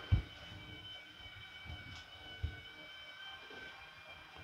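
Small toy monorail motor of a Masters of the Universe Origins Eternia playset whining steadily as it carries a jetpack-mounted figure around the plastic track, running easily under the light load. A knock sounds right at the start and a softer one about halfway.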